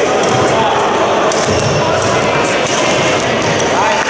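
Badminton rally: a few sharp racket hits on the shuttlecock and quick footwork on the court, over a steady din of voices in the sports hall.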